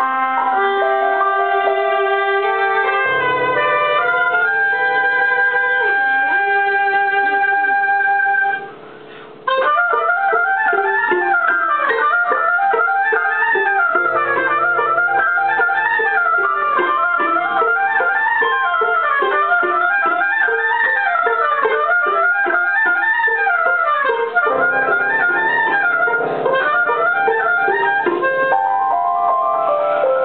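An instrumental ensemble playing a rehearsal piece: long held chords for the first several seconds, a brief break about nine seconds in, then rippling runs that rise and fall over and over.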